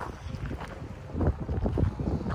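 Wind buffeting the microphone, an uneven low rumble that swells a little stronger about a second in.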